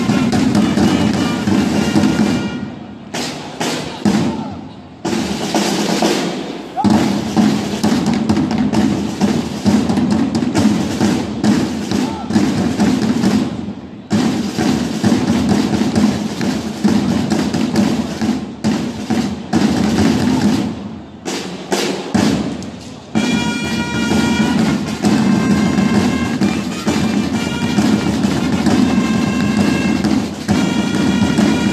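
Drums rolling steadily with long held trumpet notes over them, the live music of a flag-waving team's drummers and trumpeters. The trumpet notes stand out near the start and again from about three-quarters of the way in.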